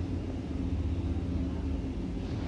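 Steady low background rumble with a faint hum.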